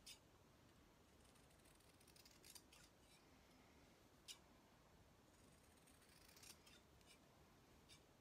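Faint, short snips of fabric shears cutting through the seamed corners of a flannel-and-fleece square, several cuts spread through, the sharpest about four seconds in.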